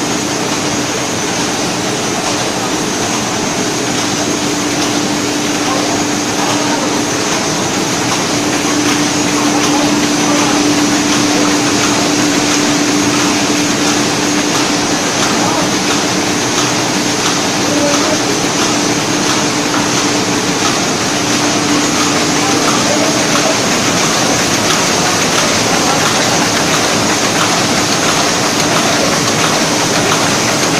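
An offset printing press fitted with an anilox coating unit and a UV curing conveyor dryer, running steadily: a continuous mechanical drone with a constant low hum and a high hiss.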